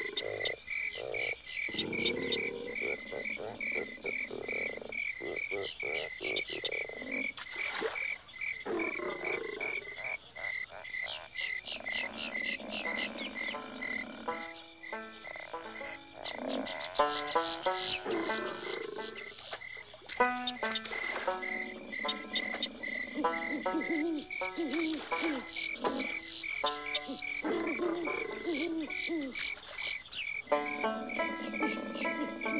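Bayou soundscape of frogs croaking over a steady, rapid high chirping of insects. In the second half, music notes pick out a tune beneath them.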